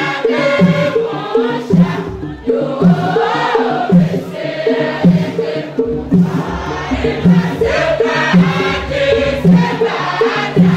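A large group of women singing a Tiv-language church song together, over a steady, repeating low accompaniment with a beat about twice a second.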